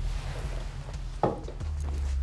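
Low, sustained film-score drone, broken about a second in by a single sharp hit, after which a deeper drone swells in.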